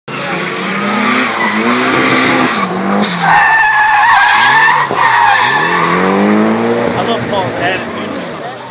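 A car's engine revving up and down while its tyres squeal and skid on asphalt. The tyre squeal is loudest from about three to five seconds in.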